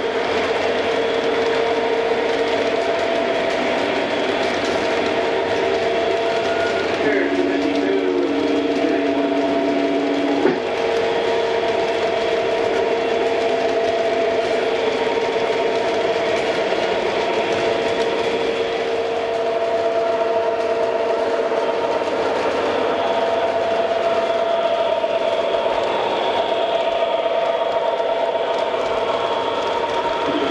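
MTH O gauge model train rolling by on three-rail track: a steady mechanical whir from the locomotive motor and wheels, with steady humming tones. A lower tone joins about seven seconds in, holds for about three seconds, and cuts off with a click.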